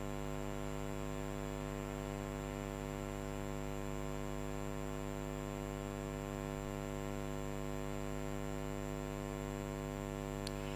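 Steady electrical mains hum: a constant low buzz with many even overtones, unchanging throughout.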